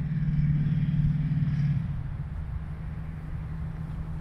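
Motor vehicle engine running with a low, steady hum that is strongest for the first two seconds and then drops off, over a low rumble of road traffic.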